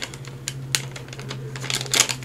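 Irregular light clicks and crackles of a Velcro fuzzy (loop) strip being slowly peeled off a vellum piece. A low steady hum runs underneath.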